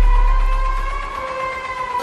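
A steady, high, siren-like drone in an action movie trailer's sound mix, holding one pitch with a slight waver. A deep bass rumble under it fades away early and comes back hard right at the end.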